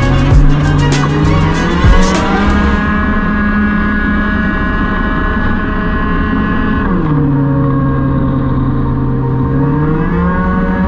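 Onboard sound of a Peugeot Speedfight 50cc scooter engine held at high revs. The pitch steps up about two seconds in, drops about seven seconds in as the throttle comes off, and climbs again near the end.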